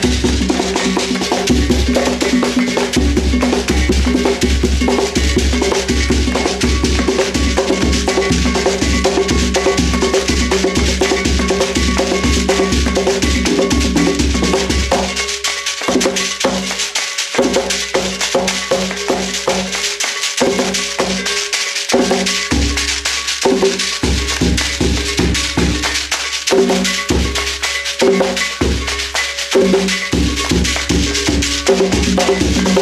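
Traditional Bamoun folk music played on percussion: a dense, steady rhythm of drums with rattling and ringing hand percussion over steady pitched tones. About halfway through, the low drum drops away and the beat becomes sparser and more broken.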